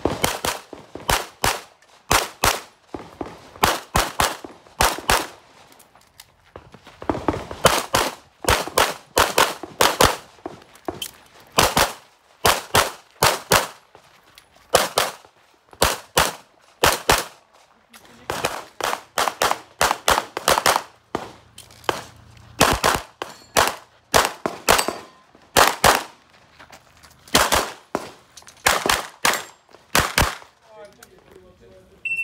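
A CZ semi-automatic pistol fired in fast strings on an IPSC competition stage: sharp shots in quick pairs and clusters of two to five, with short breaks between the strings.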